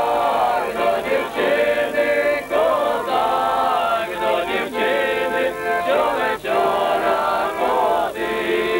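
A men's group singing a Ukrainian folk song together in phrases, with an accordion playing along.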